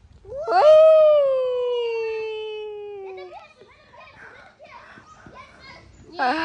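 A young child's voice in one long drawn-out call of about three seconds that slides slowly down in pitch, followed by faint scattered sounds.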